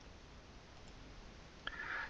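Faint room hiss, then a single computer mouse click near the end.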